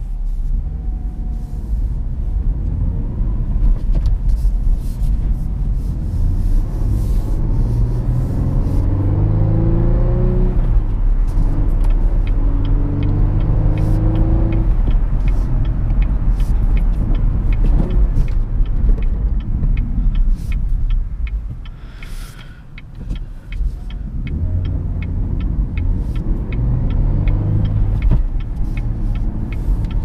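Inside the cabin of a 2016 Cadillac ATS-V coupe: its twin-turbo V6 pulls hard several times, its note rising with each pull and breaking off for a manual gear change, over a steady low drone of tyre and road noise. The revs drop off briefly about two thirds of the way through.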